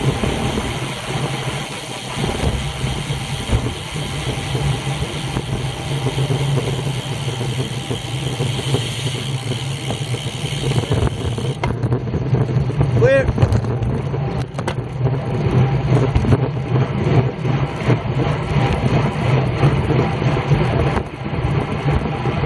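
Wind rushing over a bicycle-mounted camera's microphone, with tyre and road noise from a road bike riding at around 20 mph. The high hiss thins out about halfway through as the ride slows for a corner.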